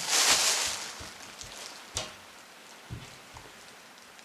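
Yellow plastic bag rustling and crinkling as a hand rummages in it, loudest in the first second and then dying away, with two light clicks later on.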